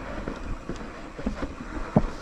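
Wind buffeting the microphone with a low rumble, over a mountain bike rolling slowly, with a few light knocks from the bike. The loudest knock comes near the end.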